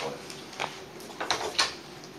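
A few short clicks and knocks in a pause between speakers, the two loudest close together a little past the middle.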